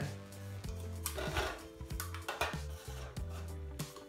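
Quiet background music, with several short knocks and light clatter as plastic cups and a metal cookie sheet are handled and set down.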